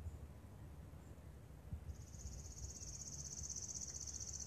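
A high, even trill of rapid pulses from a small animal starts about halfway in and holds one pitch, over a faint low rumble of outdoor background.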